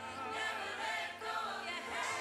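Music with a group of voices singing together, choir-like, at a steady level.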